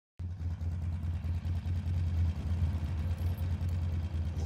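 A motor vehicle's engine idling: a steady low rumble with a fast uneven pulse, starting abruptly a moment in.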